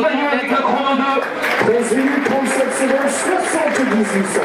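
A male stadium announcer talking over the public-address system, the words unclear.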